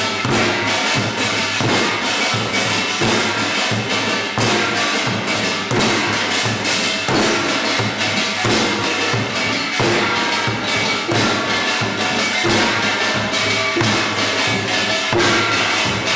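Korean traditional percussion ensemble of janggu hourglass drums, kkwaenggwari small hand gongs, a buk barrel drum and a jing gong, playing a fast, dense rhythm. Quick drum strokes run under the ringing clang of the small gongs.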